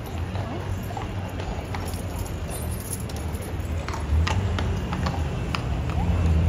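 Shod horse's hooves clip-clopping on cobblestones in a few irregular steps as the cavalry horse shifts and turns, the strikes clearer in the second half.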